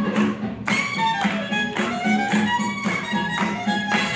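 Swing music with a steady beat of about two strokes a second and a melody carried by sustained notes.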